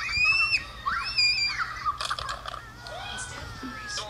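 Little girls' high-pitched shrieks from a video clip: two long screams in the first two seconds, then quieter voices.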